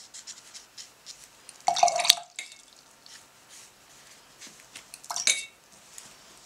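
Paintbrush rinsed in a glass water jar, clinking against the glass: a burst of clinks with swishing water about two seconds in, and a shorter ringing clink near the end.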